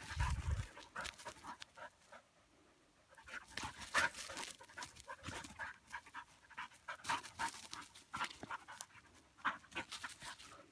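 A dog panting close by in irregular runs of quick breaths, with a brief low rumble at the very start.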